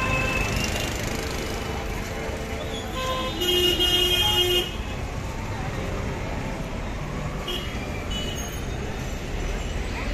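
Road traffic running steadily, with a vehicle horn sounding loudly for about a second, a little over three seconds in.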